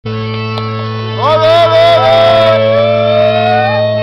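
Live folk music: a steady low drone sounds throughout. A fiddle melody slides in about a second in and carries on over it in long, wavering held notes.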